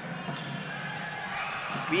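Steady crowd noise in a basketball arena during live play, with a ball being dribbled on the hardwood court.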